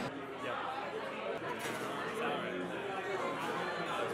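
Indistinct chatter of many people talking at once around a bar, with no single voice standing out.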